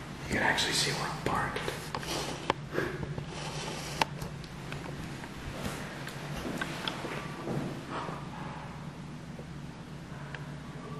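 Indistinct whispering voice, with no words that can be made out. Sharp clicks fall about two and a half and four seconds in.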